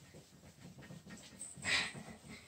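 Whiteboard eraser rubbing writing off a whiteboard: faint, scattered wiping, with one louder hissing stroke shortly before the end.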